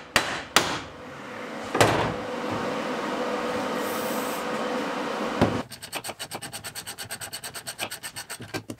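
Metal hand tools working on a vehicle axle and bearing housing. A few sharp metal knocks come in the first two seconds, then a steady scraping for about three seconds, another knock, and then a run of rapid, even clicks at about eight a second.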